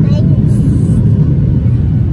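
Steady low roar inside a jet airliner cabin in flight: engine and airflow noise, unchanging throughout.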